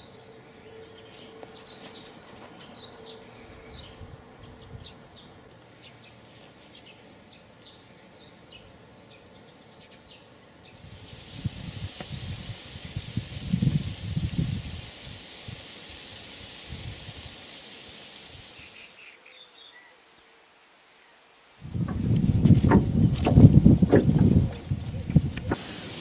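Outdoor countryside ambience: faint birds chirping at first, then several seconds of a steady high hiss. After a couple of seconds of dead silence, loud low rumbling noise fills the last few seconds.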